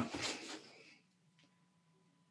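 The tail of a man's shouted count, 'san', fading out within the first second, followed by near silence with one faint click.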